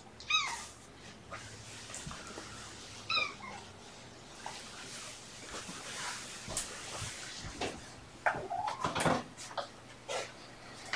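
Kitten meowing twice, two short high cries that fall in pitch, about three seconds apart. Later come scattered knocks and rustling, loudest about eight to nine seconds in.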